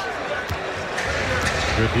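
Basketball being dribbled on a hardwood court, sharp bounces about once a second, over steady arena crowd noise.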